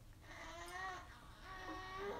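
Faint, drawn-out high-pitched cries, two in a row, the second starting a little after halfway.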